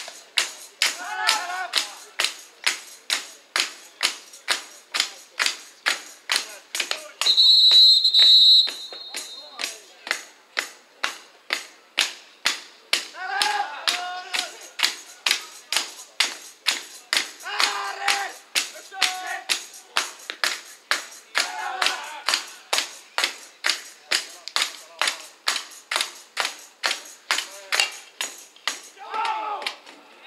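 Pesäpallo crowd keeping up a steady rhythmic beat of about two strikes a second, with bursts of shouted chanting now and then. A single loud whistle blast of about a second and a half comes near the eight-second mark.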